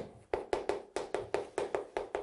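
Chalk on a chalkboard while writing: a quick run of short, sharp tapping strokes, about five a second.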